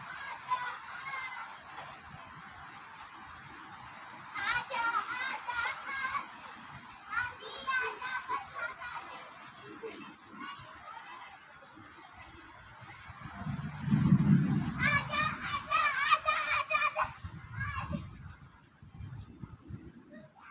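Distant children's voices calling out in three short spells over a steady outdoor hiss, with a low rumble swelling about two-thirds of the way through.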